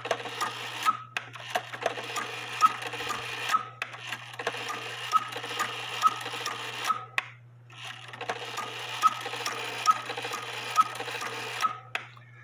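Herbert Herr cuckoo-quail clock's count-wheel quail train running after the hour is tripped by hand: the movement runs with regular clicks about once a second and the quail calling, in two runs with a short break just past the middle. No cuckoo follows, because the cuckoo trip wire is spread too far apart.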